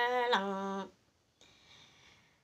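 A woman singing long held notes, her pitch stepping down, until she stops just under a second in; then a pause with only faint hiss.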